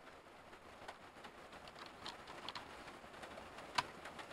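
A few faint computer keyboard keystrokes over low background noise, finishing a typed terminal command, with the clearest click near the end as Enter is pressed.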